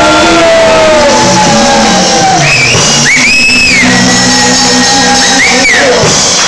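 Live rock band with guitars playing loudly, voices singing and shouting over it, and high gliding whoops in the second half.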